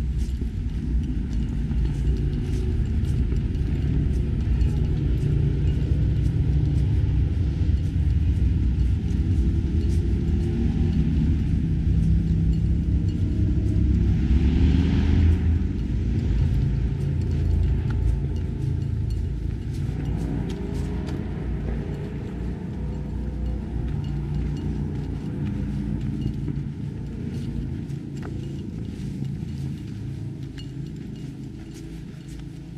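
A loud, steady low rumble, with faint clicks over it.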